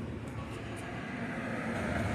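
Low, steady rumble of distant vehicle noise, slowly getting louder.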